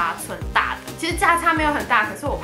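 A woman talking over background music with a steady beat.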